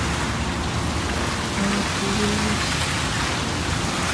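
Steady rushing background noise with faint music under it.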